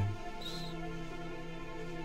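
Soft meditation music under the pause: a bed of steady, sustained tones carrying the 4 Hz binaural beat, with a brief high note about half a second in.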